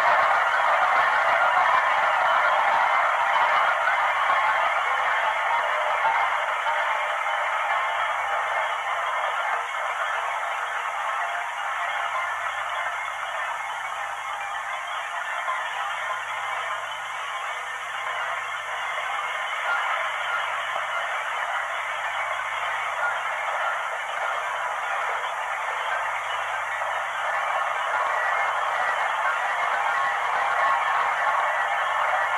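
A dense, steady hiss-like wash of noise that eases off a little in the middle and swells again near the end, with a faint low hum pulsing on and off beneath it from a few seconds in.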